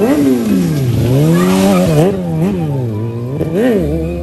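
Sport motorcycle engine being revved repeatedly during stunt riding. Its pitch drops, then climbs again in several quick blips, with a sharp rev peak near the end.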